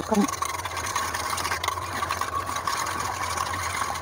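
Wire whisk beating egg and sugar in a steel bowl: a fast, continuous clatter and scrape of metal on metal.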